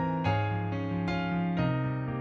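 Piano music: chords and melody notes struck about twice a second over held bass notes.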